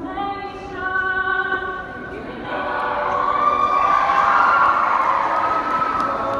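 Mixed a cappella choir holding sung chords. About two seconds in, crowd cheering and shouting swells up over the singing, loudest near the end.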